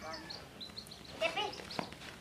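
Baby chicks peeping, a string of short, high, falling chirps, with a child's voice breaking in briefly just past the middle.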